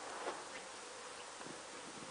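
Quiet room tone: a steady hiss with a faint hum, and a few soft knocks and rustles.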